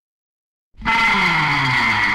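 Silence between two tracks of a 1964 surf-rock LP, then about three-quarters of a second in, the next track opens loud with a race-car sound effect: an engine note falling in pitch over a high tyre screech.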